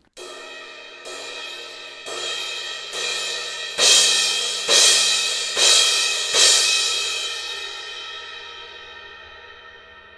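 Sabian crash cymbal struck with a drumstick about once a second, getting harder: four lighter strokes, then four loud crashes, after which the cymbal rings on and slowly fades. This is a test of its crash sound across the dynamic range, for whether the tone stays consistent or turns splashy when played hard.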